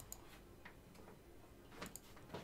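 Near silence broken by a few faint clicks of a computer mouse as a drop-down menu is opened and an option picked.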